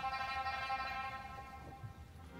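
Live music from a pipa concerto with symphony orchestra: one high held note that swells and then fades away.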